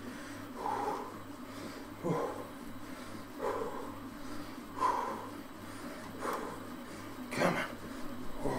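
A man breathing hard from pedalling an exercise bike, a puffing breath about every second and a half. A low steady hum runs underneath.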